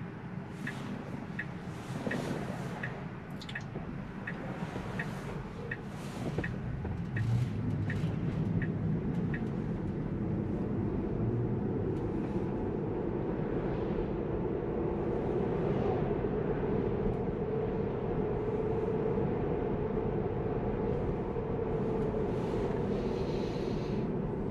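Tesla turn-signal indicator ticking steadily, about three ticks every two seconds, while the car waits and then turns. The ticking stops about nine seconds in, and steady tyre and road noise inside the cabin grows louder as the car gathers speed.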